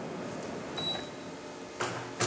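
Steady room noise in a pause of speech, with a faint, brief high beep about a second in and a short click near the end.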